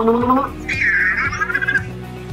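Cozmo toy robot's synthesized voice: a short rising vocal sound, then a high, warbling robotic chirp about a second in, over background music.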